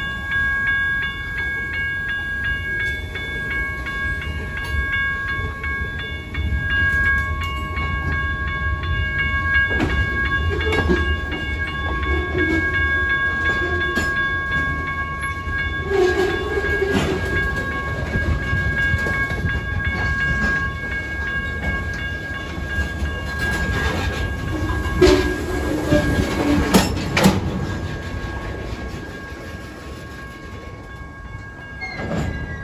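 Freight train of covered hopper cars rolling past at a grade crossing: a continuous low rumble of wheels on rail, with clanks and bangs from the cars, strongest about 10, 16 and 25–27 seconds in. A steady high ringing tone sounds over it for most of the passage and fades in the last third.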